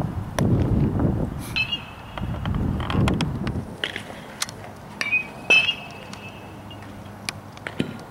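Low rumbling of wind on the microphone for the first few seconds, then an open-air background with several sharp clicks. A few of the clicks have a short metallic ring, about a second and a half in and twice around five seconds in.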